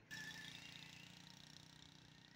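Faint diesel tractor engine running with a steady low hum. The sound comes up abruptly just after the start.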